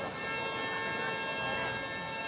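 A sustained tone of several pitches sounding together starts suddenly and holds steady, over faint voices.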